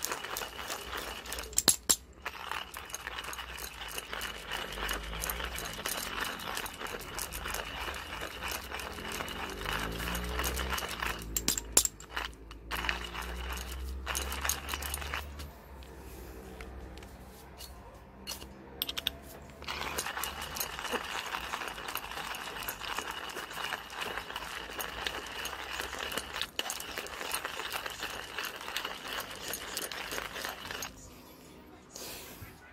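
Manual hand coffee grinder being cranked, its burrs crunching through coffee beans in a dense, steady crackle. The grinding pauses for several seconds in the middle, then resumes.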